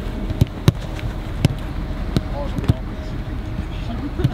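Footballs being kicked in a passing drill: about five sharp ball strikes at uneven intervals, with faint players' shouts in the background.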